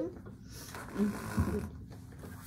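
A person's breathy vocal sound: an airy exhale lasting about a second, with a short voiced bit in the middle.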